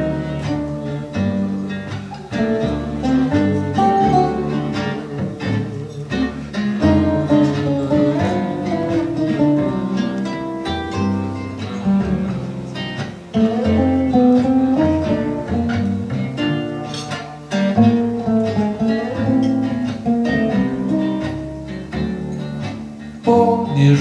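Instrumental break of a song: nylon-string acoustic guitars and a double bass playing together, without singing.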